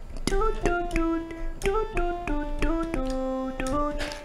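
A microKORG synthesizer playing a short single-note melody of about a dozen stepping notes, sounded through an ElectroSpit neck-worn mobile talk box.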